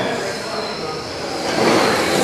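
Electric RC racing trucks with 21.5-turn brushless motors running laps on a carpet oval. A steady high motor whine sits over the noise of tyres and drivetrains as the trucks pass close by.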